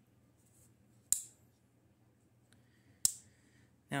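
Craftsman slip-joint pocketknife snapping shut on its backspring: two sharp metallic clicks, about a second in and about three seconds in, each with a brief ring. The joints have just been oiled.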